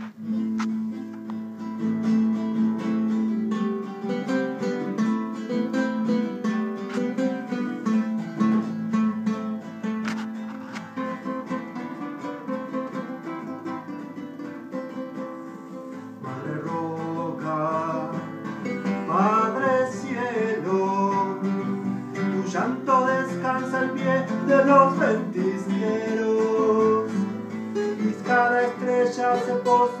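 Two nylon-string classical guitars playing a slow folk song together. About halfway through, a man's voice comes in over them.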